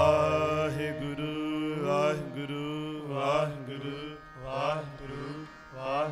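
Sikh shabad kirtan: a harmonium holding sustained notes under a singer's drawn-out, melismatic sung phrases that rise and fall every second or so. The tabla falls silent right at the start.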